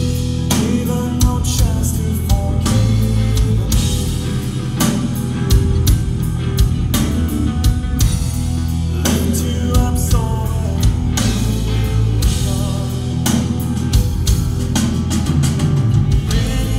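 Live progressive metal band playing loud: electric guitar, bass guitar and a drum kit, with frequent cymbal and drum hits over a heavy low end.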